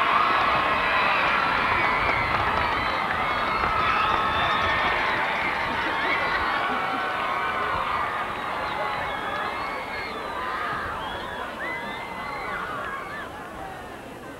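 Stadium crowd cheering and screaming, with many high shouts and whoops over a steady roar. It slowly dies down.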